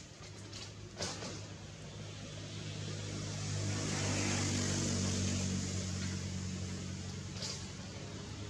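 A motor engine passing by: a steady low drone with hiss that grows louder to a peak about halfway through, then slowly fades. There is a short click about a second in.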